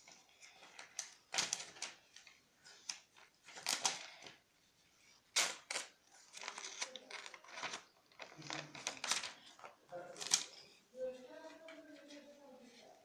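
Scissors snipping through paper, with the paper rustling and crackling as it is handled: an irregular run of sharp snips and rustles, several of them louder.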